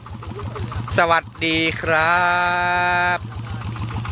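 Engine of a rice-paddy mud tractor idling, with a steady, rapid, even beat.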